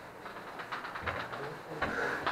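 Chalk tapping on a blackboard in a quick series of short strokes as dashed lines are drawn.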